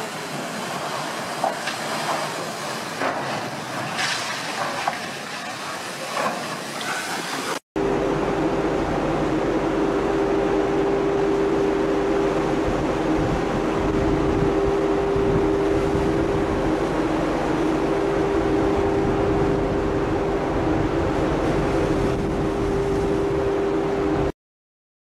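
A large ship running aground under power onto a beach: rushing water with scattered knocks and crunches from the hull. After a sudden cut about eight seconds in comes a steady droning hum over churning water from a ship's propeller turning at the surface under the stern.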